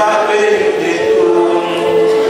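Church congregation singing together in long held notes, with more than one pitch sounding at once.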